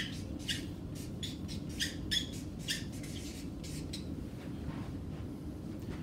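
Felt-tip marker squeaking on flip-chart paper in short, irregular strokes as words are written; the strokes stop about four seconds in.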